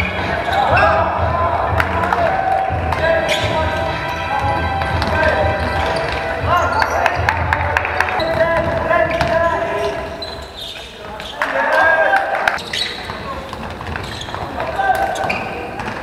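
Basketball bouncing on a sports-hall floor, with players' voices, echoing in a large gym.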